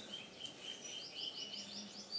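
Birds calling: thin high chirps, then about a second in a quick run of five short repeated high notes, about five a second.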